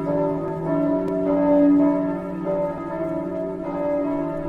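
Bells pealing: a continuous run of bell notes of several pitches, struck in turn, each ringing on under the next.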